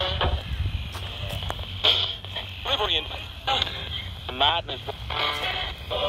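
Ghost-hunting spirit box radio sweeping through stations, throwing out a string of brief chopped snatches of voices and music, each cut off after about half a second, over a low rumble.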